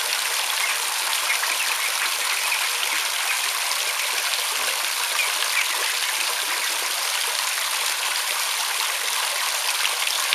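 Shower spray falling steadily onto the water of a plastic kiddie pool, a constant hiss of drops splashing on the surface.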